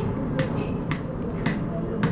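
A goat drinking from a plastic bottle held to its mouth: sharp clicks about twice a second as it sucks and swallows, over a low background rumble.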